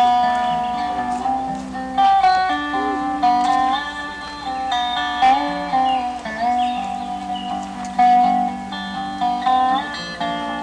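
Resonator guitar (dobro) played with a steel bar: a picked melody whose notes slide and bend between pitches, over ringing lower bass notes.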